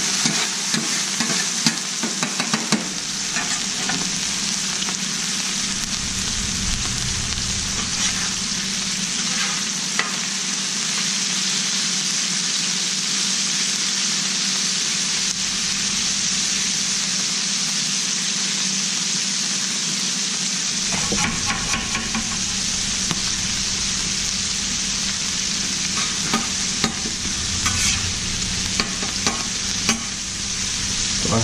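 Chorizo, beans and cubed bacon sizzling steadily on a hot Blackstone steel griddle, with a metal spatula scraping and ticking on the cooktop as the food is turned.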